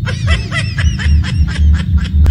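A person laughing hard in a fast, high-pitched run of short 'ha' bursts, about seven a second, over a steady low rumble.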